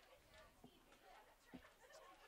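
Near silence: faint, distant voices from the field, with two soft knocks.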